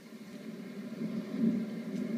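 A machine running steadily with a low, even hum.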